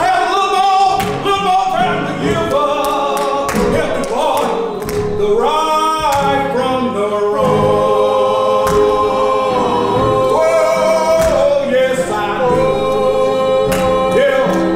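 A gospel song sung by an elderly man into a microphone, joined by a few women's voices, with long held notes and scattered hand claps.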